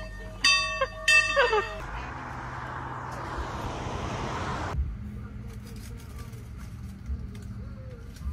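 Two sharp, ringing bell-like chime strikes about half a second apart near the start, among voices. A steady rushing noise follows for a few seconds and cuts off suddenly, leaving quieter background with small ticks.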